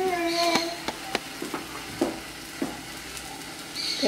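Handmade corn tortilla cooking on a hot metal griddle, with a faint sizzle and about half a dozen small crackles and ticks as it puffs up. A brief drawn-out voice sounds in the first second.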